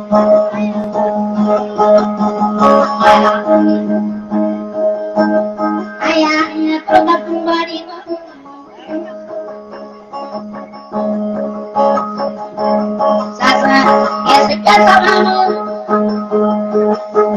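Dayunday music: a plucked string instrument playing over a steady held drone note, with busier, louder passages about three seconds in, around six seconds and again near the end, and a softer stretch in the middle.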